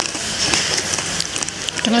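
Close-up chewing of a hard, crunchy snack: a run of small crackling crunches, like someone eating bone.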